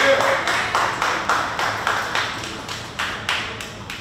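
Audience clapping together in a steady rhythm, about four claps a second, dying away near the end.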